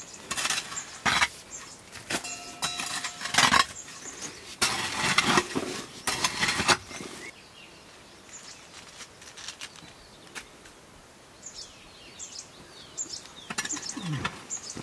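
Several rough scrapes and knocks of a short-handled hoe dragging through cow dung and earth on a cowshed floor, over roughly the first half. The rest is quieter, with small birds chirping near the end.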